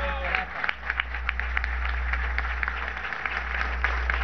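A crowd applauding with scattered, uneven claps.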